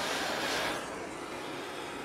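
A person blowing a breath of air onto a torch-heated wideband oxygen sensor, a breathy hiss that fades out within the first second, leaving a faint steady hiss. The blow cools the sensor and drives its reading lean.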